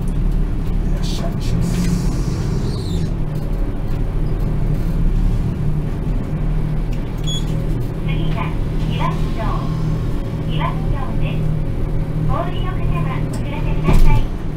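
Route bus engine and road noise heard from inside the cabin: a steady low drone as the bus drives along, with faint voices in the second half.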